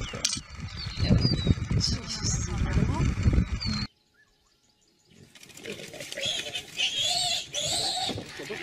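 Wild birds chirping over a loud, low rumble that cuts off about four seconds in. After a second of near silence, birds call again, with a softer background.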